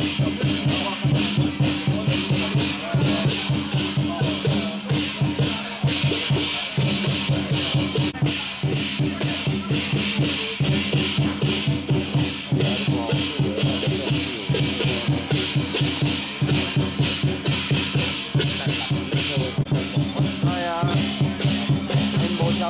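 Procession music accompanying a deity-general troupe's dance: a fast, steady percussion beat of drums and cymbals over sustained low tones, loud and unbroken.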